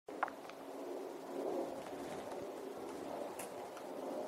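Quiet outdoor background with a faint steady hum and a few faint, short clicks scattered through it.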